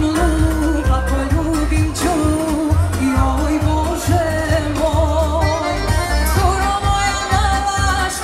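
Live band music played loud over a PA, with a sung vocal line full of wavering vibrato over a steady deep bass beat.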